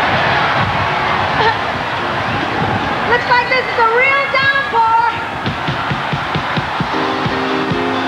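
Live outdoor concert sound: a steady wash of noise from a huge crowd in the rain, with a female singer's voice rising and falling in a wavering sung line about halfway through. Steady held keyboard chords from the band come in near the end.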